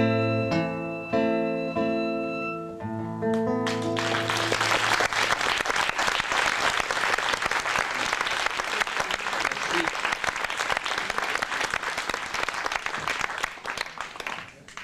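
Acoustic guitar chords ringing out as a song ends, then audience applause starting about four seconds in and dying away near the end.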